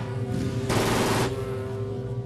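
A short burst of automatic gunfire lasting about half a second, a little under a second in, over a sustained low music chord from the film score.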